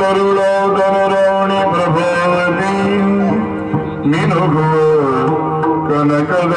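Yakshagana bhagavata singing: a man's voice holding long, gliding phrases over a steady drone, with a new phrase starting about four seconds in, accompanied by light maddale drum strokes.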